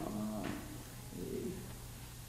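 Two brief, low hummed murmurs from a person, the first lasting about half a second and a fainter one about a second later, over a steady low room hum.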